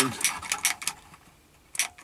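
Sharp clicks from a long-nosed utility lighter's trigger as it is worked to light the stove: a quick run of clicks in the first second, a pause, then more clicks near the end.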